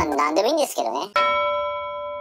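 A voice speaks briefly, then about a second in a single bell-like chime is struck and rings on, slowly fading: an edited comic sound effect.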